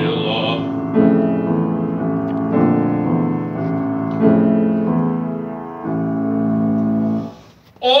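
Grand piano playing a solo passage of a romance's accompaniment: full chords struck about every second and a half, each left to ring. A male singer's held note fades just after the start. Near the end there is a brief near-silent pause before the voice comes back in.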